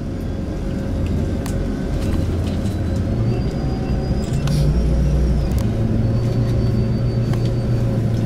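Engine and road rumble of a moving vehicle heard from inside its cabin, a steady low drone that swells slightly about halfway through, with a few faint clicks.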